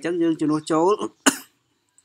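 A man speaking Khmer, explaining maths working. He stops, gives a single short cough about a second and a quarter in, and then goes quiet.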